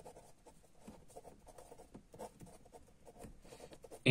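Faint scratching of a pen writing a couple of words by hand, in short uneven strokes.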